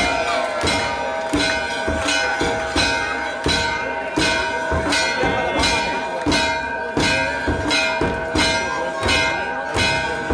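Temple bells ringing continuously for the evening aarti. Their ringing tones hold steady under a regular struck beat with a low thump, about three strikes every two seconds.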